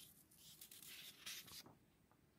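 Faint rustling of paper as a printed sheet is slid away and the next one put in its place.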